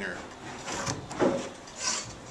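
Pencil scratching lines along the edge of a steel framing square on a wooden stair stringer, with the square rubbing on the wood. There are two stronger strokes, one just past the middle and a hissing one near the end.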